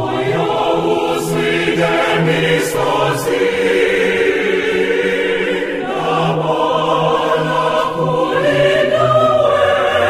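Church choir singing a hymn in parts, with a low bass line under the higher voices. The choir comes back in right at the start after a short break and then sings on steadily.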